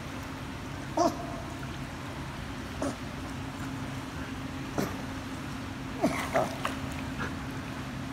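A man paddling in water in a life vest and lifebuoy makes short grunts, puffs and splashes every second or two, with a quick cluster of them about six seconds in, over a steady low hum.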